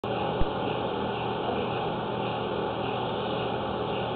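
A steady background hum and hiss with a single brief click about half a second in.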